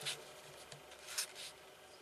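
A pen writing on paper: faint scratching strokes with a few light ticks.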